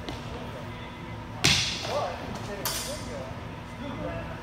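Single sticks striking during sparring: one sharp crack about one and a half seconds in, then a second, fainter crack just over a second later.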